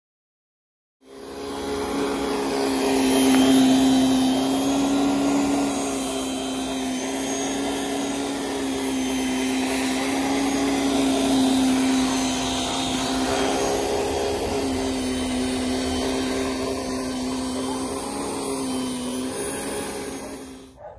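Handheld motorised rotary brush running steadily with a held motor hum as its bristle drum spins against artificial turf, brushing up the matted pile. It starts about a second in and runs until the very end.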